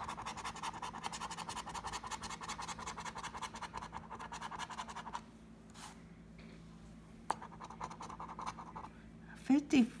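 Coin scratching the coating off an instant lottery scratch-off ticket in rapid back-and-forth strokes. The scratching stops about halfway through, a single short tap follows, and it starts again before a voice returns near the end.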